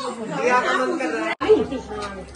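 Several people chattering indistinctly, their voices overlapping; about two-thirds of the way through the sound cuts out for an instant and comes back with a low hum under the voices.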